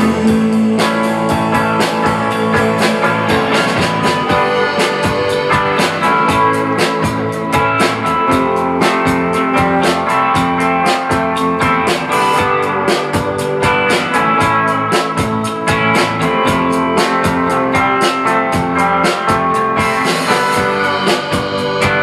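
Live band playing a rock song: electric guitar, electric bass and drum kit with a steady beat.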